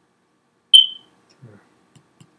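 A single short, loud, high-pitched electronic beep just under a second in, fading away quickly.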